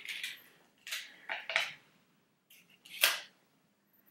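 Short crackles as a small plastic capsule mask pot is handled and opened, then a sharp sniff near the end as the cream is smelled.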